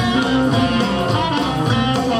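Live blues band playing: electric guitars, bass and drum kit, with a harmonica fill played between the singer's lines.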